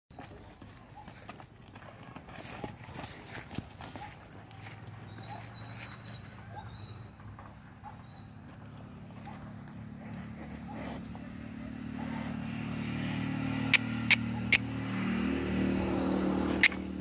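A low engine hum grows steadily louder through the second half, with three sharp clicks near the end. Faint high chirps and scattered clicks come in the first half.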